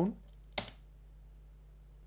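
A single sharp computer keyboard keystroke about half a second in: the Enter key entering the 's shutdown' command at the emulated OS/390 console. Otherwise only a faint steady low hum.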